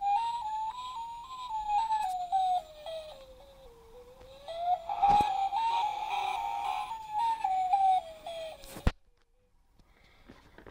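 A battery sound unit in a Dickie Toys police riot van playing a tinny electronic tone that climbs and falls in pitch in short, even steps. There is a click about five seconds in, and the tone cuts off suddenly with a click shortly before the end.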